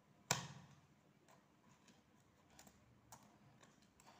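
Pliers clicking against small metal fittings on a plastic wire basket: one sharp click near the start, then a few faint clicks.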